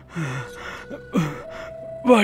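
A man's pained gasps: two short vocal sounds falling in pitch, about a second apart.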